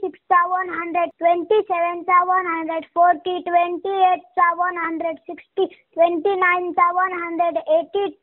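A child reciting the twenty times table in a sing-song chant, one held phrase after another with short pauses between.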